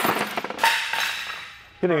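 Metal-on-metal clanks and clatter as a small aluminum engine is knocked apart with a hammer on a steel workbench: a sharp hit at the start, rattling parts, then a louder ringing clank about half a second in that fades away.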